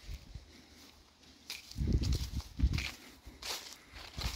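Footsteps on grass strewn with dry fallen leaves: a few irregular soft thuds with brief leaf rustles, the heaviest steps about two seconds in.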